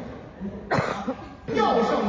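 A single sharp cough about two-thirds of a second in, followed by a man speaking into a stage microphone.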